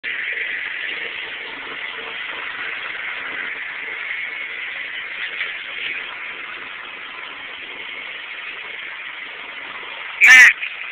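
Steady background hiss that holds at an even level throughout, with a few faint small bumps about five to six seconds in.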